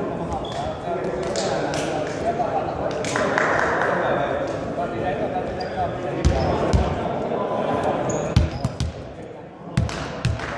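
Volleyball bounced on a sports-hall floor a few times, dull thumps in the second half, over a murmur of players' and spectators' voices echoing in the hall.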